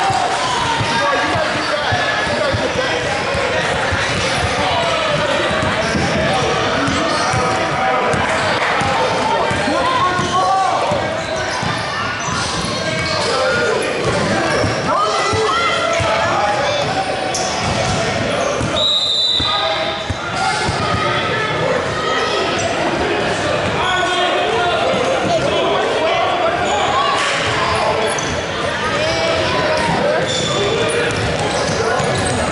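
Basketball dribbling and bouncing on a hardwood gym floor during a game, mixed with the voices of players and spectators, all echoing in a large hall.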